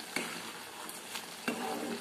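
Metal spatula stirring a wet ridge gourd and chana dal curry in a pan, over a steady low sizzle of the curry cooking. The spatula knocks lightly against the pan just after the start and again about a second and a half in.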